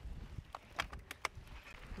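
Mountain bikes moving off on a rocky dirt track: a few sharp clicks and knocks from the bikes and stones over a low rumble.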